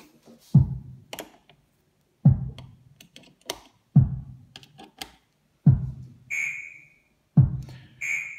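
Eurorack drum module (Sound Machines Simple Drum) played by triggers from a Baby-8 step sequencer: five low drum hits that fade quickly, evenly spaced about 1.7 seconds apart. Short lighter clicks fall between them, and a higher ringing tone comes in near the end.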